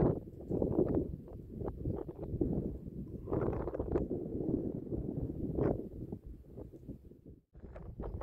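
Wind buffeting the microphone in uneven gusts, a low rumble that drops away briefly near the end.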